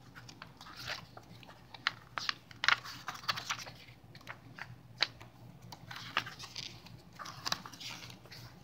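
A paperback book's page being flipped back and forth by hand, as for a flip-book animation. It makes a string of irregular soft paper flaps and rustles, with a few sharper snaps among them.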